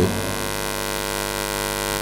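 Steady electrical mains hum from the microphone's sound system: a buzz made of many even overtones, with a faint hiss above it.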